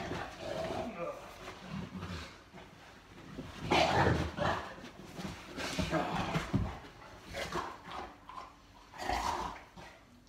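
A Boerboel (South African mastiff) vocalizing in irregular bursts during rough play, loudest about four seconds in.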